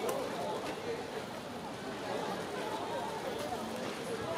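A crowd of people talking and calling out at once, no single voice clear, with a few sharp clicks near the start.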